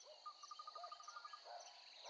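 Very quiet nature ambience: a steady high insect trill, with a quick run of about a dozen evenly spaced ticks in the first second and a half, and a few soft chirps.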